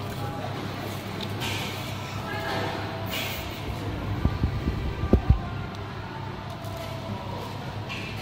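Restaurant room noise with faint background chatter and music, and a short cluster of low thumps about four to five seconds in.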